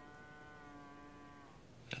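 A cow lowing faintly: one long, steady call that ends about one and a half seconds in.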